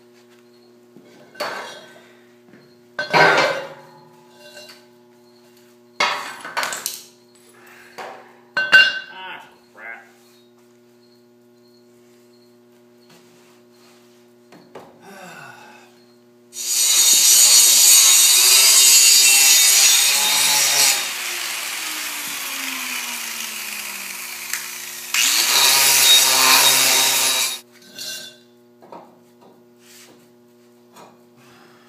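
Steel pipe clanking as it is handled and set into a steel frame, then, a little past halfway, a hand-held grinder working on the steel. The grinder runs in two loud spells, with its pitch falling as it slows down between them.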